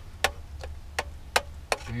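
A metal spoon clinking against a metal cooking pot: four light, sharp clicks, unevenly spaced.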